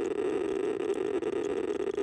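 Berthold LB 1210B Geiger counter's loudspeaker clicking for each count, so fast that the clicks run together into a dense, steady crackle. The rate is about 120 counts per second over a piece of uranium-bearing copper shale, far above the background of about 20 counts per second.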